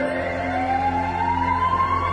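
A siren-like tone in a dance music mix, gliding slowly upward in pitch over steady low held notes.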